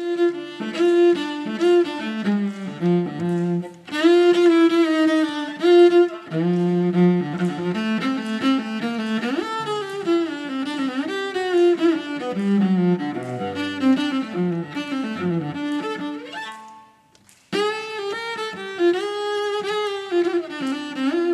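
A cello played with the bow, improvising a continuous line of melody with notes moving quickly up and down. The playing breaks off briefly about three seconds before the end, then resumes.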